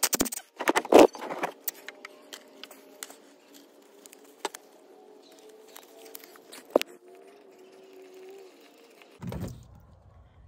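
Sharp metallic clicks and rattles in the first second and a half as a hand-held power tool is handled, then scattered lighter clicks over a faint steady hum. About nine seconds in, a low rushing begins as engine oil starts draining from the sump.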